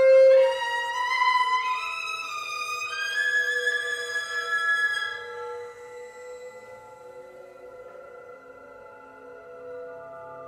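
Solo violin with electronics: a loud accented note, then a phrase of notes climbing in steps. At about five and a half seconds it fades into quieter held tones.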